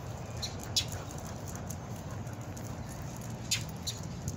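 Steady low outdoor background rumble with three faint, sharp clicks: two close together under a second in and one more near the end.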